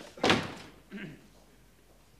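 An office door with a glass panel banging shut once, loudly, about a quarter second in, with a short ring-off.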